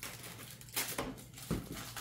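Aluminium foil crinkling as a toddler handles it, a couple of short crackly rustles about a second in, followed by a light knock.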